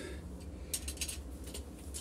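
A few faint, light clicks from small metal parts and tools being handled, over a low steady hum.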